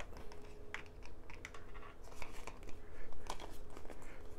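Scattered small clicks and rustles of a plastic gaming headset and its cable being handled as the detachable boom microphone is worked out of its socket in the ear cup.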